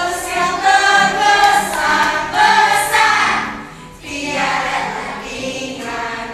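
A group of children singing a song together with adult voices, a classroom sing-along, with a short lull in the singing just before four seconds in.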